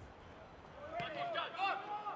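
Match sound from a football pitch in a near-empty stadium: faint shouts from players, and a single sharp knock of the ball being kicked about a second in.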